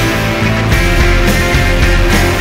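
Rock band playing an instrumental passage with no singing: electric guitars and keys over bass and a steady drum beat.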